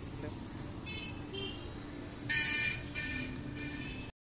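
Street traffic with a steady rumble and several short vehicle horn toots, the loudest about two and a half seconds in.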